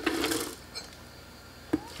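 Chopped garlic and green chilies scraped off a plastic cutting board and dropping into a plastic blender jar: a short rustling scrape of about half a second, then a single light knock near the end.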